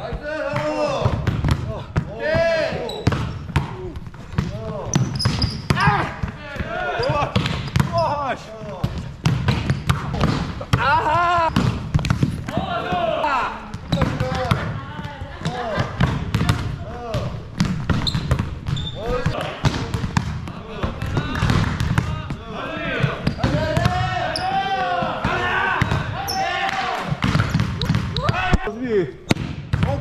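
Indoor volleyball play in a large gym: repeated sharp slaps of the ball off players' hands and arms, with short squeaks and players calling out between hits, echoing in the hall.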